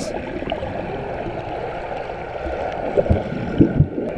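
Muffled underwater sound from a camera held under the water while people swim: a steady murky rushing with bubbling, and a few low knocks in the last second.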